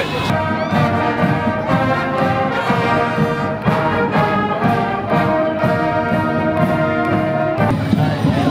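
Marching band playing on the move, trumpets and other brass carrying held chords over a steady beat. The music cuts off suddenly near the end.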